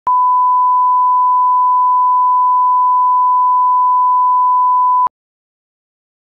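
Steady 1 kHz line-up test tone of the kind that accompanies colour bars, one unbroken pure tone that cuts off abruptly about five seconds in.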